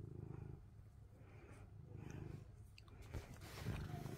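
A ginger-and-white domestic cat purring faintly while being stroked, a low pulsing purr that comes and goes in stretches about two seconds apart, a sign of a content cat. Near the end there is soft rustling and a few clicks.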